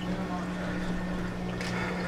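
Steady low electrical hum of a reef aquarium's circulation powerheads running.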